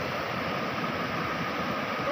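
Fast-flowing river rushing over rocky rapids: a steady, even rush of water.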